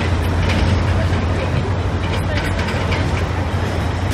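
Loud, steady city street noise: a low rumble of road traffic, with people's voices faintly mixed in.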